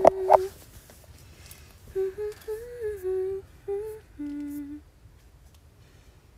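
A woman humming a slow melody in a small room: a note at the very start, then from about two seconds in a run of held notes with short breaks, ending on a lower held note just before five seconds, after which it goes quiet.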